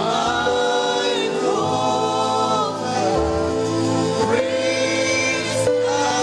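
Live gospel worship music: voices singing long held notes that slide between pitches, over sustained musical backing.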